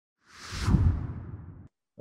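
Whoosh sound effect for a logo intro: a rush of hiss that slides down in pitch over a deep boom, swelling quickly to a peak under a second in, then fading until it cuts off shortly before the end.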